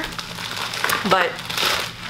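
Packaging crinkling as it is handled, with the rustle swelling about one and a half seconds in.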